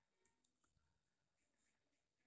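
Near silence: a pause between spoken sentences, with no other sound.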